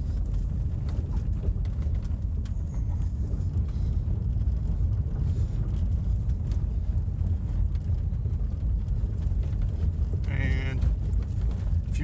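Vehicle cabin noise while driving slowly on a rough dirt track: a steady low rumble of engine and tyres, with scattered small clicks and knocks from the bumps.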